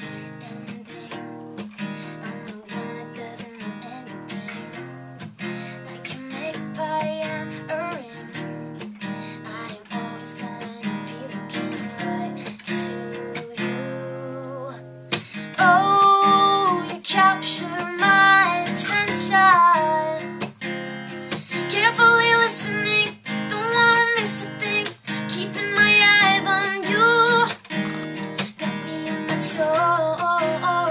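Taylor steel-string acoustic guitar strummed in a steady rhythm, with a woman singing along. There is a brief drop about halfway through, after which the singing comes in louder over the strumming.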